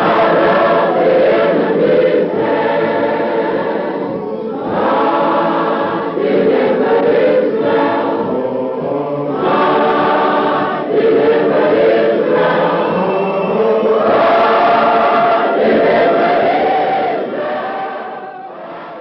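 A choir singing in long held phrases with short breaks between them, fading out near the end.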